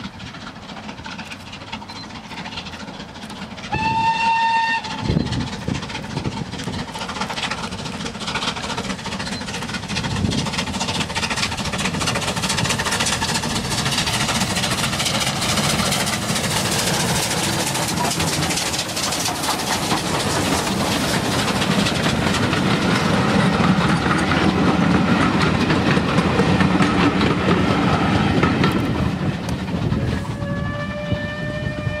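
Steam locomotive hauling a train of coaches past at speed. It gives one short whistle about four seconds in, then its exhaust and the clatter of wheels on the rails grow steadily louder as the engine and coaches go by, easing slightly near the end.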